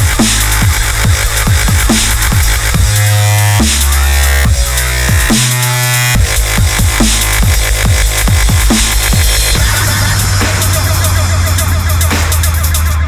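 Dubstep music: a deep sub-bass that changes note every second or so under repeated falling-pitch kick drums and buzzy synth bass, with the sub-bass cutting out briefly about five and a half seconds in.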